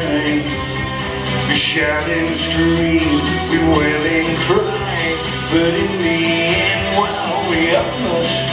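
Live song played on an amplified electric guitar, with a sustained melody line over it.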